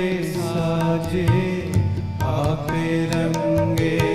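Sikh kirtan: voices sing a Gurbani shabad with wavering, ornamented lines over the held reed chords of harmoniums, with tabla strokes keeping a steady beat.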